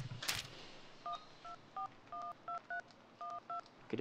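Touch-tone phone keypad beeps as a number is dialled: about eight short two-note tones, two of them held a little longer, following a brief sharp noise at the start.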